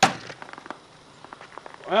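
A Kershaw Tension folding knife's blade slashing a plastic two-liter bottle: one sharp, loud crack as the blade strikes the plastic at the start, then a few faint ticks.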